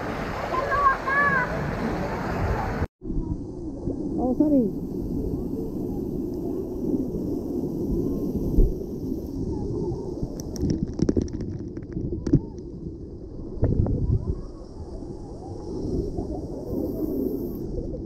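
Pool water splashing with children's voices and shouts; after an abrupt break about three seconds in, the sound turns muffled, with water pouring and splashing at a splash pad, voices in the background and a few sharp taps of drops.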